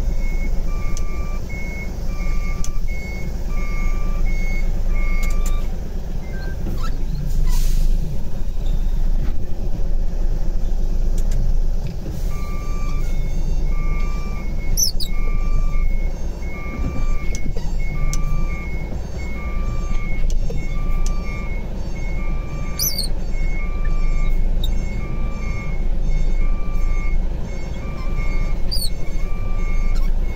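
A truck's reversing alarm beeping in even, steady pulses over the low running of the diesel engine as the tractor-trailer backs up. The beeping stops about five seconds in, a short hiss of air comes around eight seconds, and the beeping starts again about twelve seconds in and keeps on.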